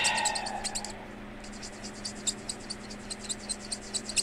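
Felt-tip marker scribbling on a paper challenge card, colouring in the printed circles with quick back-and-forth strokes, several a second.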